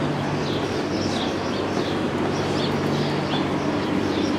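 Street ambience: a small bird chirping over and over in short falling notes, about twice a second, over a steady low hum and general street noise.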